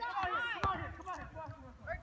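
Voices talking and calling out, indistinct, with one sharp knock about two-thirds of a second in.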